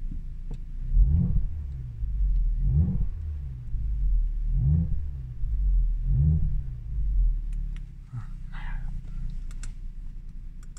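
Audi S5's turbocharged 3.0-litre V6 blipped four times, each rev rising in pitch and falling back, about every one and a half to two seconds, through its valved, adjustable exhaust. It then settles back to a steady idle.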